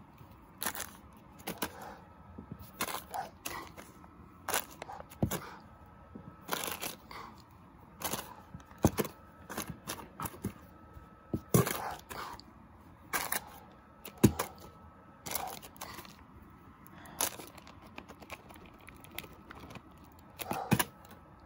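Clear plastic wrapper crinkling and crackling as it is handled, with irregular taps and knocks of a plastic toy figure against the carpeted floor. The sounds come in short, uneven crackles throughout, the heaviest knocks about halfway through.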